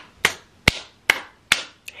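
Five sharp hits made with the hands, evenly spaced at a little over two a second.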